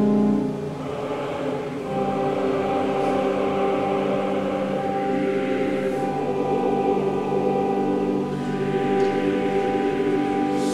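Large church choir singing long held chords. The sound drops back just after the start and swells again about two seconds in.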